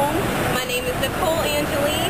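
A woman's voice talking over steady city street traffic noise.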